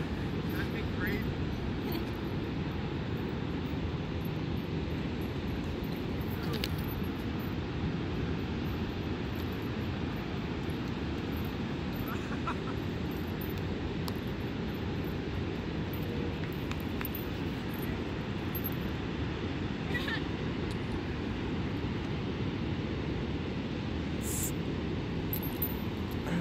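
Steady low rumble of ocean surf mixed with wind on the microphone, holding an even level throughout.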